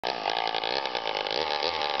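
Small two-stroke chainsaw fitted with a bow guide bar, idling steadily with an even buzz.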